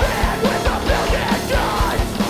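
A live heavy rock band playing: distorted electric guitar, bass guitar and drums with a fast, driving kick drum, about five hits a second, under yelled lead vocals.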